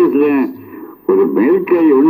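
Only speech: a man talking, with a short pause about midway.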